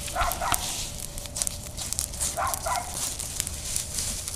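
Burning pile of dead leaves crackling, with many sharp snaps and pops. Two brief double sounds rise over the crackle, one just after the start and one about two and a half seconds in.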